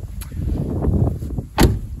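A car door, the 2005 Ford Focus ZX3's, pushed shut and closing with a single solid slam about one and a half seconds in, after a brief rustle of movement.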